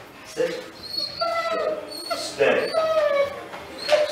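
Young dog whining: a run of short, high-pitched whines, each falling slightly in pitch.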